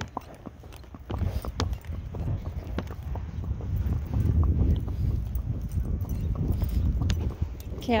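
A pony's hooves clip-clopping at a walk on wet asphalt: irregular sharp clicks over a steady low rumble.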